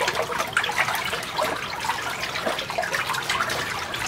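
Water sloshing and splashing as a hand stirs it vigorously in a large plastic tote of about 18 gallons, mixing in hydroponic nutrient, with continual small splashes.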